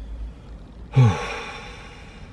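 A man's sigh, 'whew', about a second in: a short voiced start that falls in pitch, then breath blown out through pursed lips, fading away.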